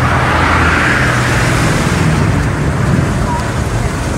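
Steady road traffic noise with a low engine hum, starting suddenly just before and holding level throughout.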